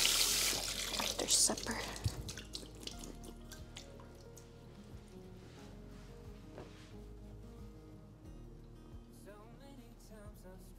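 Kitchen tap running into a sink as fruit is rinsed under it, shut off about two seconds in. Faint background music with a few light clicks follows.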